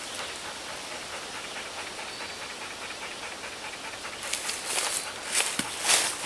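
Steady hiss for about four seconds, then footsteps crunching and brushing through leafy forest undergrowth, growing louder near the end as the walker comes close.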